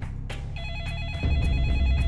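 A warbling electronic ring starts about half a second in and holds steady. A deep low rumble swells in just after the first second.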